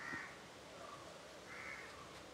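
A few faint, short bird calls, the clearest near the end.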